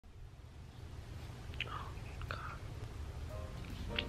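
A woman's faint whispering and breathy sounds, a couple of short soft ones a second and a half and two and a half seconds in, over a low steady hum.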